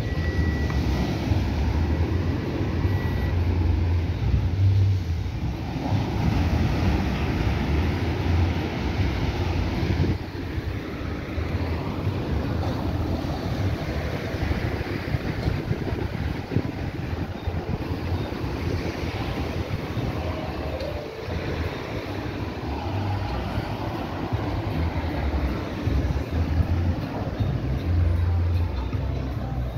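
Wind buffeting the microphone over a steady outdoor rush of road traffic. A faint steady high tone sounds in the first few seconds.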